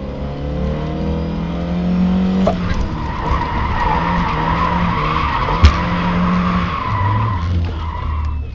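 A rally car's engine heard from inside the cabin. It revs up and breaks off with a gear change about two and a half seconds in, then runs on under a steady high squeal. There is a single sharp knock near six seconds, and the engine drops to a lower note near the end as the car slows.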